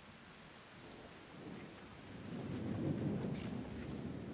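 A low, deep rumble over a steady hiss, swelling to its loudest about three seconds in, with a few faint clicks near the end.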